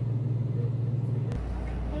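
Steady low hum of a room air conditioner, which cuts off abruptly about a second and a half in and gives way to a quieter, lower room hum.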